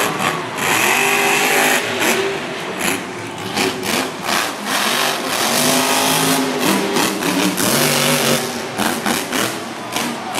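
Grave Digger monster truck's supercharged V8 engine revving hard, its pitch rising and falling repeatedly as the truck drives around the arena.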